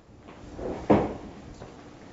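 A single short thump about a second in, fading quickly, with a fainter rustle just before it, over quiet room tone.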